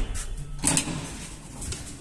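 Metal landing door of an old ZREMB elevator being handled by hand: a loud clunk a little over half a second in, then softer knocks and rattles.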